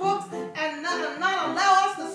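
A woman's voice singing in a sung, chanted style of preaching, in short phrases with the pitch sliding up and down.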